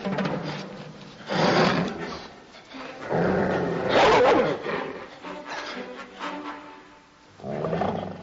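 Film soundtrack of dogs snarling and growling in three loud bursts, about a second in, around three to four seconds in, and near the end, over an orchestral score.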